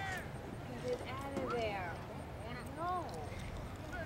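Distant voices of players and spectators shouting and calling across a soccer field, in short scattered calls over a low outdoor background.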